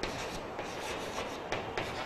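Chalk writing on a blackboard: scratchy strokes with a few sharper taps as the chalk meets the board, one at the start and two more about one and a half seconds in.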